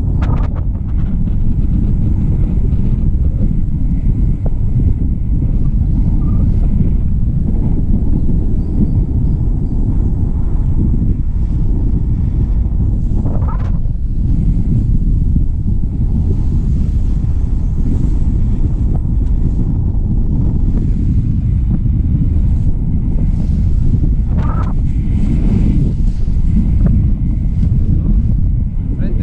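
Steady wind rumble buffeting an action camera's microphone in flight under a tandem paraglider.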